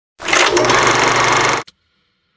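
A loud, rapid buzzing rattle, lasting about a second and a half and cutting off suddenly.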